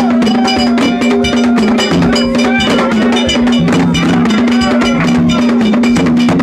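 Loud Dominican gagá music: dense percussion with cowbell-like metal strikes over a low held note, while a lower second note comes and goes in short stretches, with voices gliding above.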